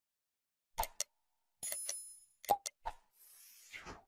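Subscribe-button animation sound effects: a few sharp clicks, a short bell ding about a second and a half in, more clicks, and a soft whoosh near the end.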